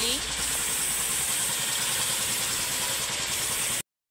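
Steady background noise with a low rumble like an engine running, which fades a little after the first second and cuts off abruptly to silence just before the end.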